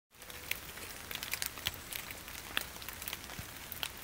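Light rain: scattered drops ticking irregularly over a faint steady hiss.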